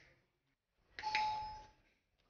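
A single bright electronic chime, one ding about a second in that rings out and fades within a second, like a doorbell or notification tone.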